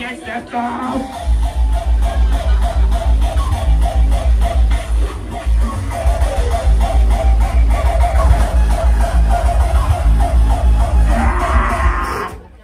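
Loud electronic dance music with a heavy kick drum: the kick drops out at the start and comes back in about a second in, then keeps a steady pounding beat under a repeating melody. Near the end a hissing rise builds over the music.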